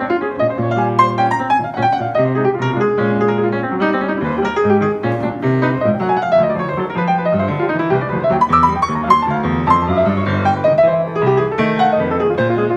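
Grand piano played solo: quick runs of notes in the treble over low, held bass notes.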